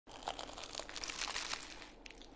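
Flaky baked pastry (pastizzi) crackling and crunching as it is bitten into: a dense run of small crackles that fades toward the end.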